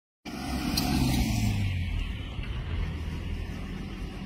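A road vehicle's engine running close by, loudest about a second in and then easing to a steadier, lower rumble as it moves off.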